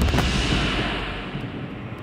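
Fading rumble of a loud boom sound effect, a noisy low roar that dies away steadily, its high end fading out first.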